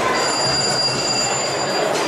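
A steady, high-pitched ringing tone that holds for almost two seconds and stops near the end, over a noisy background.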